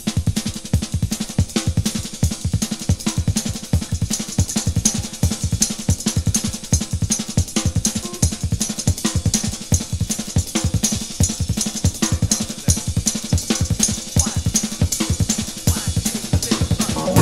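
A drum kit playing a busy jazz-rock groove with nothing else prominent: kick and snare strokes come several times a second under a steady wash of hi-hat and cymbals.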